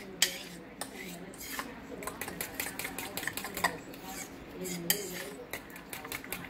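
A metal fork stirring a thick protein batter in a bowl, with irregular clicks and scrapes as the tines knock and drag against the sides.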